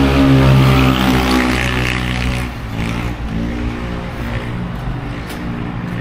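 A motor vehicle's engine running steadily as it passes on the road, loudest in the first two seconds and then fading away.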